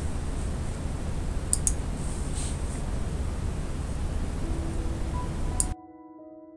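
A damp baby wipe rubbing over a crackle-painted heart over a steady low rumble and hiss of room noise, with a couple of sharp clicks about a second and a half in. Near the end the noise cuts off suddenly and soft piano music comes in.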